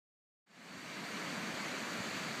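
Steady rush of small waves breaking on a sandy beach, fading in about half a second in after dead silence.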